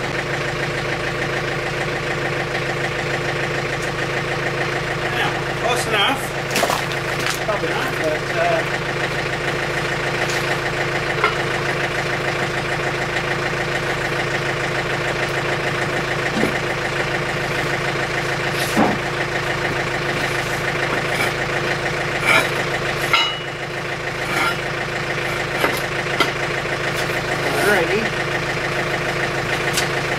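John Deere tractor-backhoe's diesel engine idling steadily, with scattered sharp metal clanks and knocks as a steel ripper shank is pinned onto the backhoe stick.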